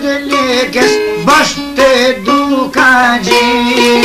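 Albanian folk music played on a çifteli, the two-stringed long-necked lute, with quick plucked notes and sliding pitches.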